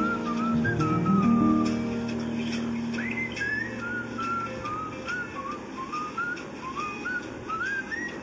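Music: a whistled melody of short, sliding notes, over low held chords that fade out about two seconds in, leaving the whistled tune on its own.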